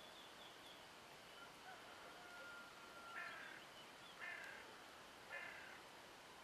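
Faint outdoor background with a bird calling: a thin, held whistled note, then three short harsh calls about a second apart in the second half.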